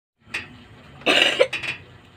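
A person coughs once, loudly, about a second in, with a few short clicks and rustles from a cardboard box being handled just before and after.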